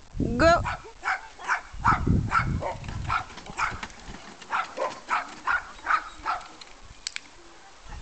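A large dog barks once, about half a second in, then goes quiet. A quick run of short, light sounds follows, about three a second, as it runs along an agility dog walk.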